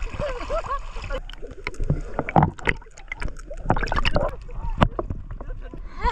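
River water splashing and slapping close by in an irregular run of sharp splashes, after a short stretch of voice at the start.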